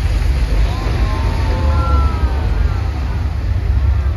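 Water fountain show: a loud, steady deep rumble from the show's sound and fountain jets, with a few faint gliding tones over it.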